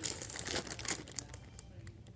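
Plastic candy packaging crinkling as it is handled, a run of crackles for the first second or so that then dies away.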